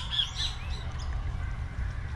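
Bird calls: a quick run of short, arched, high chirps, about three a second, that stops about half a second in, over a steady low rumble.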